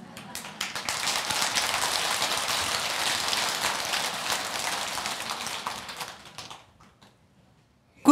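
Audience applauding: many hands clapping, building in the first second and dying away about seven seconds in.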